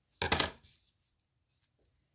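A short clatter about a quarter second in, as a tool such as scissors is set down on a cutting mat, followed by near silence.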